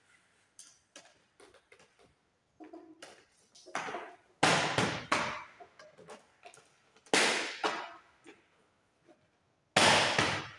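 PVC cable trunking cover being pressed onto its base along a wall, giving three loud plastic snaps about two and a half seconds apart, the last near the end, with light handling clicks before them.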